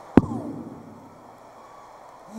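A single sharp thump about a fraction of a second in, heavy in the low end, as if picked up close to a handheld microphone. It is followed by low, steady room noise from the theatre.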